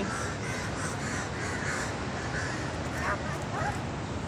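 Steady outdoor background noise, with a few faint short calls near the end.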